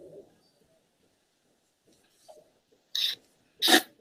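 Near silence on a video-call line, broken near the end by two short noisy bursts about two-thirds of a second apart, the second louder.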